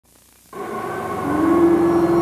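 A held, droning soundtrack tone fades in about half a second in and swells. A steady higher note joins about a second in.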